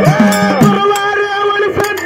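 Folk devotional singing through a PA: a male singer's voice glides down and then holds one long steady note, while the dhol drum beats steadily for the first half second and then drops out.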